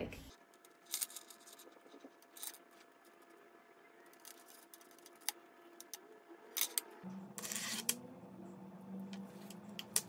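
Faint, scattered clicks and light clinks of a metal bag chain's links being handled, with the rustle of a ribbon being threaded through the links.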